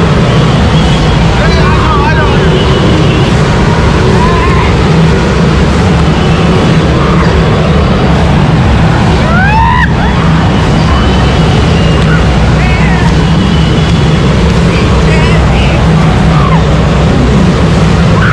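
A loud, steady low rumble with people in the pool shouting and whooping now and then.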